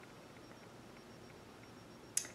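Near silence: faint room tone and hiss.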